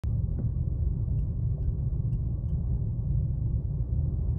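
Steady low rumble inside a moving gondola cabin as it travels along the cable, with a few faint ticks.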